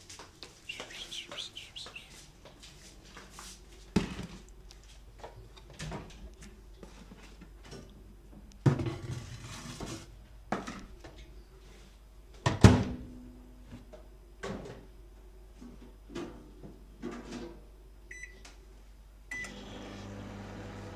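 A plastic food container is handled and loaded into an LG microwave oven, giving a run of knocks and clunks, the loudest about two-thirds of the way through. Near the end the keypad beeps twice and the microwave starts, a steady low hum as it begins heating.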